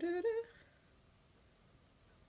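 A woman humming a short phrase of a few notes that step upward in pitch, lasting about half a second, then quiet room tone.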